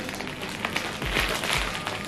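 Plastic mailer pouch crinkling and crackling as it is pulled and stretched by hand to tear it open; the plastic is hard to tear.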